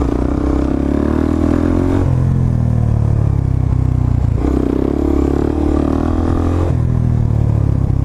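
Suzuki DR-Z400SM supermoto's single-cylinder four-stroke engine running at freeway speed, heard from on the bike, with wind noise. Its note changes every two seconds or so.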